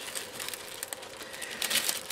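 Sheet of metallic transfer foil crinkling as it is peeled off a freshly foiled card, with a run of small crackles that thickens near the end.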